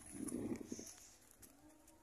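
A short, low animal call lasting about a second, then quiet.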